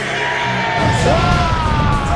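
Loud rock music with a long, held, yelled vocal line. Under a second in, the steady low notes give way to a busier, heavier low end as the drums come in.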